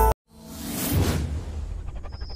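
Song music cuts off abruptly just after the start, and a whoosh sound effect swells to a peak about a second in, then fades over a low rumble.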